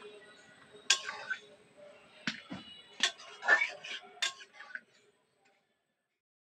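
About five sharp clicks or knocks at irregular intervals amid faint voices, then sudden silence near the end.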